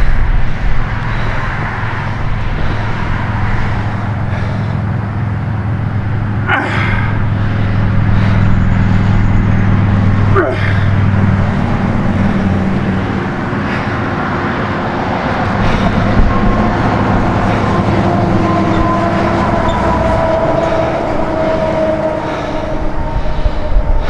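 A man straining with sustained effort-groans and grunts while bending a steel wrench by hand.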